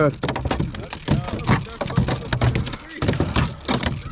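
A dense run of rapid clicks, knocks and rustling from gear being handled on a plastic kayak while a bass is being landed, with a few short vocal sounds in the first second or so.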